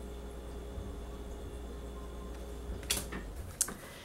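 Quiet room tone with a low steady hum that fades out a little past three seconds in, and two short clicks near the end as tarot cards are handled between showings.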